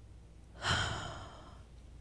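A woman's breath close to a handheld microphone: one short, airy rush about half a second in, fading away within about half a second.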